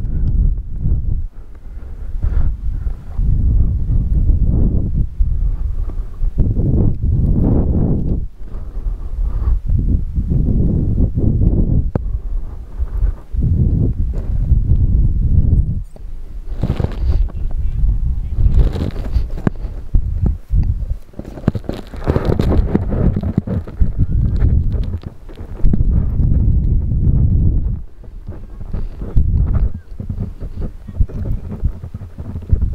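Strong, gusty wind buffeting the microphone: a loud low rumble that surges and drops every few seconds.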